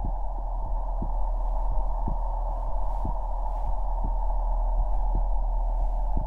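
Dramatic heartbeat sound effect: low thuds about once a second over a steady deep drone and a rushing noise.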